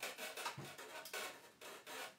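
An empty thin-walled plastic water bottle being handled and turned in the hands: a run of irregular rubbing, rustling scrapes of plastic against skin.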